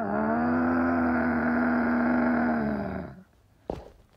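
A long, loud, steady angry vocal cry from a cartoon character, held about three seconds and then dipping in pitch as it fades. A short click follows near the end.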